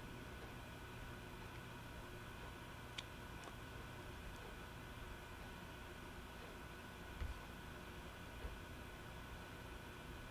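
Faint steady room hiss and hum, with a single faint click about three seconds in and a soft low bump a little after seven seconds.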